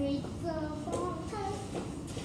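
A young girl singing a short run of held, wavering notes that stop shortly before two seconds in.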